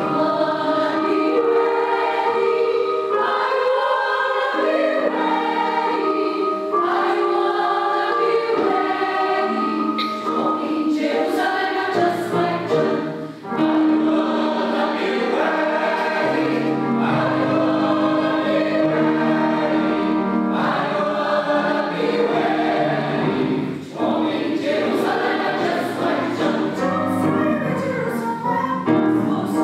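Mixed choir of women's and men's voices singing together under a conductor, in sustained phrases with two brief breaks between phrases, about halfway through and again near the end.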